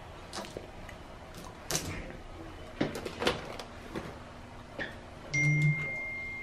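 Toiletry bottles and makeup being handled and set down on a stone bathroom counter: scattered light clicks and knocks. Near the end something is struck and rings with one clear high tone that fades slowly.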